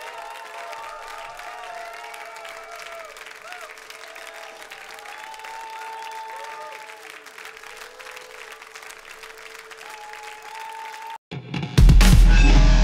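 Audience applause under sustained, gently gliding musical tones. About eleven seconds in it cuts off suddenly, and a loud, bass-heavy outro theme begins.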